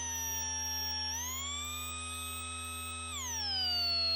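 Minimoog Model D app synthesizer playing its 'Heyooooo!' effects preset. A sustained synth tone sweeps down in pitch, glides back up about a second in, holds, then falls again just after three seconds in. It plays over a steady low drone with rapid repeating upward chirps in the treble.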